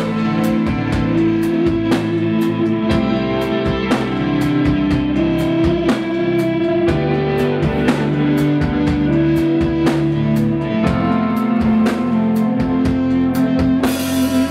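Live rock band playing: electric guitar chords and bass guitar over a drum kit, with regular drum hits.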